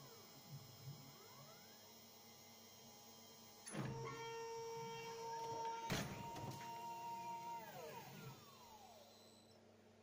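Homemade CNC mill's motors start a steady whine a little under four seconds in, then a single sharp knock as the new 6 mm carbide end mill crashes into the aluminium part, caused by a stray M30 at the end of the G-code. The whine goes on, then falls in pitch and fades.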